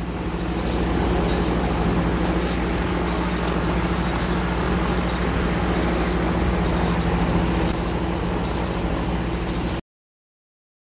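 A 50W CO2 laser engraver running an engraving pass at low power: a steady mechanical hum from the machine as its gantry moves the laser head. The sound cuts off suddenly near the end.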